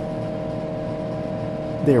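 Steady hum with several fixed tones, from the running Tektronix 4054A computer.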